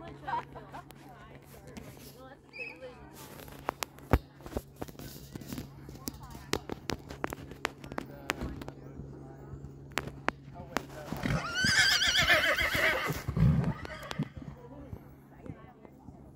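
A horse whinnies loudly for about two seconds, a quavering call, about eleven seconds in. Before it, a run of short, sharp knocks.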